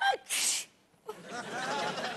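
A woman sneezes once into a tissue: a short voiced intake, then a loud hissing burst within the first second. A voiced sound follows in the second half.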